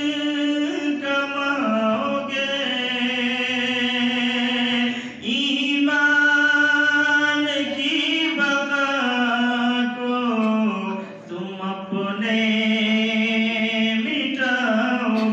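A solo male voice sings an Urdu nazm unaccompanied, holding long melodic notes in a chant-like style, with short breaks about five and eleven seconds in.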